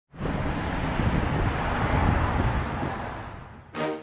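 Dense rumbling outdoor noise that sets in at once and fades away over about three seconds, then pulsing music begins just before the end.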